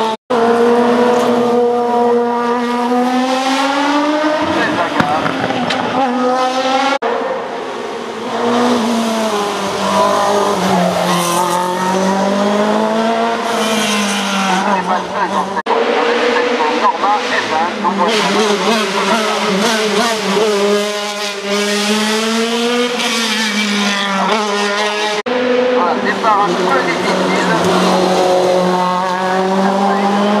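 Hill-climb race cars, one run after another, driving hard through tight bends: engine notes climb and drop again and again with the throttle and gear changes. Several runs are joined by abrupt cuts.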